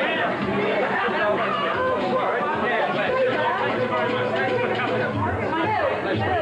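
Several people talking at once, their voices overlapping into continuous chatter with no clear single speaker.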